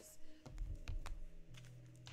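A few light, sharp clicks close together around the middle, over a low dull bump.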